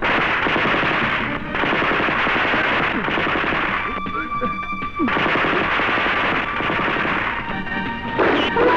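Rapid machine-gun fire in a film soundtrack, mixed over dramatic background music. The gunfire drops out for about a second midway, leaving held music tones, then resumes.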